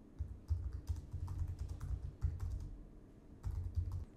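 Typing on a computer keyboard: a quick, quiet run of key clicks, a short pause, then a few more keystrokes near the end.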